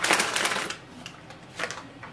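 Plastic packaging crinkling and rustling as a laser-printer toner cartridge is pulled out of it. The rustle is loudest in the first half-second or so, then dies down to faint rustles.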